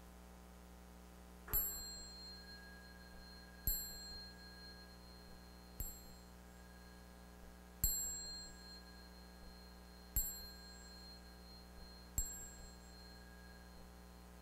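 A small bell struck six times, about two seconds apart, each strike ringing clear and high and fading over a second or two.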